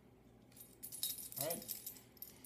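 Small metal bicycle quick-release clamp jingling and clinking in the hands as it is opened, starting about half a second in.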